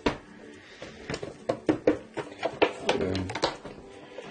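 Irregular light clicks, knocks and rustles from handling a Yum Asia Kumo rice cooker: its hinged plastic lid and the plastic-wrapped inner bowl being touched and moved.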